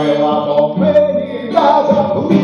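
A man singing a song in long held notes to his own acoustic guitar.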